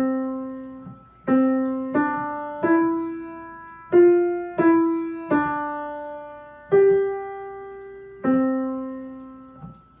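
Piano played slowly one note at a time, a simple melody of about nine notes, each struck and left to ring and fade before the next. The last note is cut off shortly before the end.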